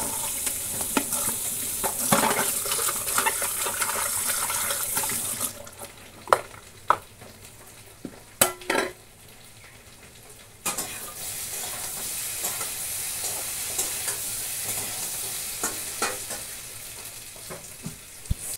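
Food frying in a metal pot, a steady high sizzle, as it is stirred with a spatula. The sizzle drops away for about five seconds in the middle, where a few sharp metal clinks sound, and then comes back.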